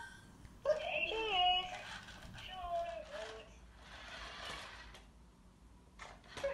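Wonder Workshop Dash toy robot making its high-pitched cartoon voice sounds: several short, chirpy, sliding vocal noises in the first three seconds, growing quieter after.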